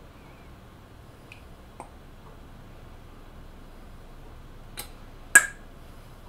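Quiet handling sounds while a soft plastic pipette squeezes e-liquid into a glass vape tank: a few faint ticks, then one sharp click a little past five seconds in.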